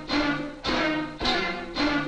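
Sampled melody of chopped stabs, each slice stretched and pitched down eight semitones in Fruity Slicer and replayed in a new order. About four notes in two seconds, each struck and then fading.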